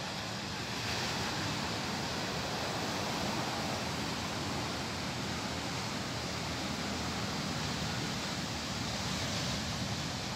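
Surf breaking and washing onto a sandy beach, a steady rushing noise that grows a little louder about a second in.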